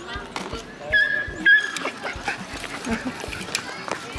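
A small dog whining, a high steady whine in two short pieces about a second in, fretting as the child it follows rides away on her bicycle.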